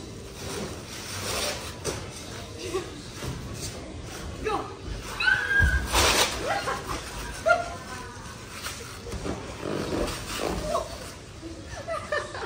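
High-pitched yelps from voices without words, and about six seconds in a short, loud rasping thud: a body in a Velcro suit hitting a padded Velcro sticky wall.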